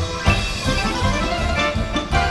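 Lively Russian folk dance music: a band of instruments over a steady, strong beat.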